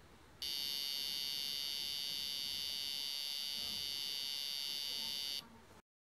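Piezo buzzer driven by an Arduino Uno, sounding one steady, shrill, high-pitched tone. It starts about half a second in, holds at an even level for about five seconds, and cuts off suddenly.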